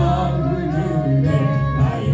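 A man singing a Korean praise song into a handheld microphone over an instrumental accompaniment.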